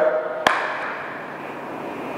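A single sharp click or knock about half a second in, then faint steady room noise.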